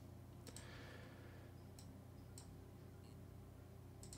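Near silence over a low steady hum, with a few faint, sharp clicks of a computer mouse.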